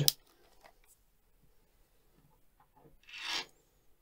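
Near quiet, then a short scraping rub about three seconds in: the watch and its rubber strap being handled and picked up off the wooden desk.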